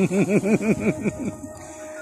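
A man laughing: a quick run of about ten short pitched 'ha' syllables that dies away after a little over a second.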